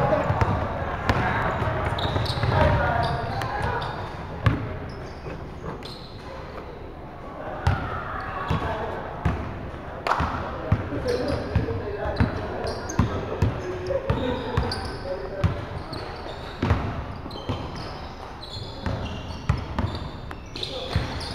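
A basketball bouncing on a hardwood court in a large, echoing sports hall, with players' voices calling out over it. The bounces are short, sharp thuds scattered through the play.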